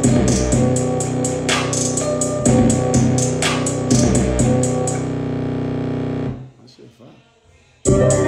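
A hip-hop beat built on a plucked guitar-like sample with bass, fast hi-hat rolls and a sharp snare or clap hit about every two seconds. About five seconds in the drums drop out. About a second later the music cuts almost to silence, then the full beat comes back in at the very end.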